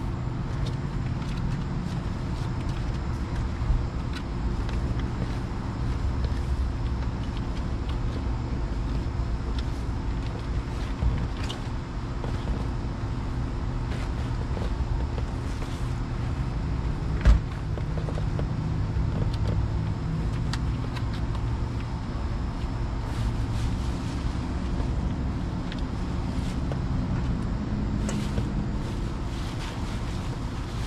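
A steady low mechanical rumble with a faint hum, broken by a few scattered knocks and rustles; the sharpest knock comes a little past halfway.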